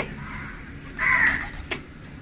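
A crow gives one harsh caw about a second in, with a sharp click shortly after.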